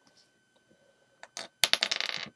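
Small hard clicks. One sharp click comes about a second and a half in, followed at once by a quick rattling run of clicks.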